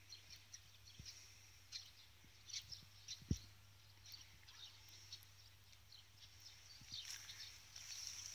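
Near silence in a garden: faint, scattered short bird chirps, with one soft low thump about three seconds in.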